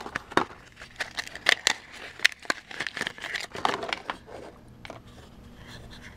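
Clear plastic wrapping crinkling and crackling as an MR16 LED bulb is pulled out of it, with handling of its small cardboard box. The sharp, irregular crackles die down over the last couple of seconds.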